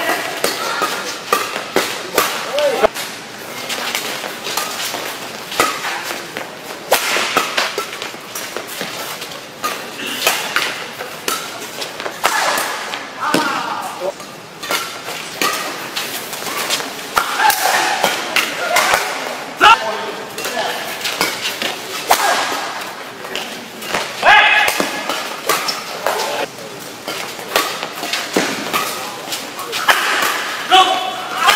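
Badminton rackets striking the shuttlecock again and again through fast doubles rallies; the smashes give sharp cracks like a pistol shot. Players' shouts and calls come in between the strokes.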